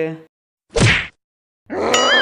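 A single short whack-like sound effect about three-quarters of a second in, under half a second long, with a falling low tone. Near the end, a new sound with a wavering, wobbling pitch starts.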